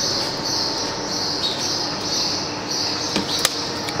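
Steady background hiss with a high-pitched buzz that swells and fades in patches, and two sharp clicks a little over three seconds in.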